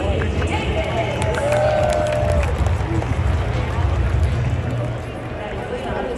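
Ballpark public-address announcer's voice, echoing and drawn out, introducing the starting lineup over crowd noise and a steady low rumble.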